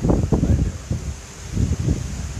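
Irregular low rumbling bursts on a handheld microphone, clustered at the start and again near the end.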